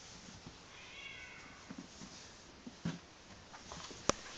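A snow Bengal kitten gives one thin, high-pitched meow about a second in, falling in pitch at its end. A few light knocks follow in the second half.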